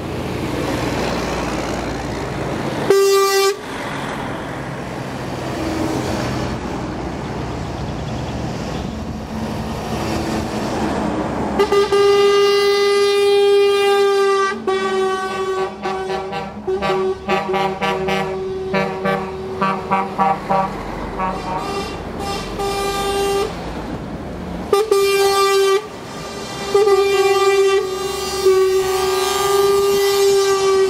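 Trucks in a passing convoy sounding their air horns over the rumble of their diesel engines: one short blast about three seconds in, then from about twelve seconds long held blasts on one note, broken into a run of rapid short toots in the middle, and more long blasts near the end.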